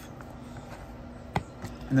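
A cleaver-style knife cutting through a ribeye that has been chilled in the freezer, with one sharp knock of the blade against the wooden cutting board a little over a second in and a couple of fainter ticks.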